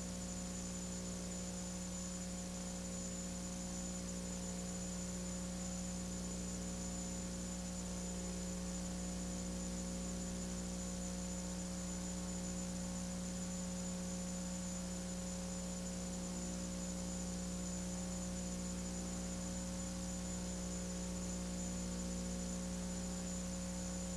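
Steady electrical mains hum with a faint high whine and even hiss, unchanging throughout: the noise floor of the recording with no program sound.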